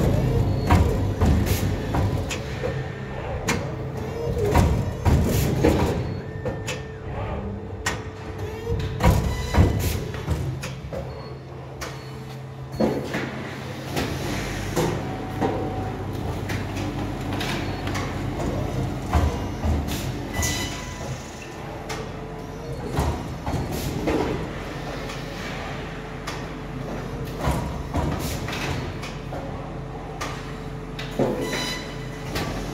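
Horizon HT-30 three-knife book trimmer running, with repeated clunks and clicks of its clamp and cutting strokes over a steady machine hum.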